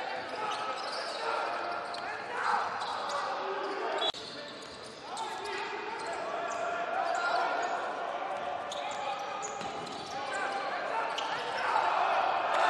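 Live court sound of a basketball game in a large, near-empty hall: a basketball dribbled on the hardwood floor, with players and coaches calling out. The sound drops and changes abruptly about four seconds in, at an edit between plays.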